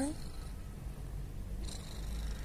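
Domestic cat purring close by, a steady low rumble, as it treads on its owner's belly.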